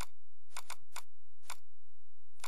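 Computer mouse button clicking: a few sharp clicks about half a second apart, including a quick double-click, as folders are opened.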